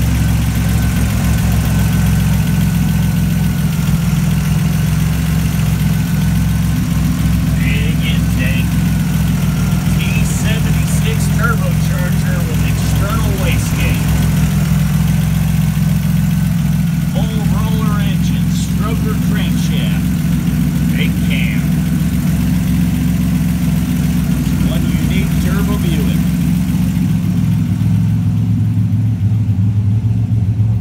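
Turbocharged 4.1-litre stroker Buick V6 idling steadily.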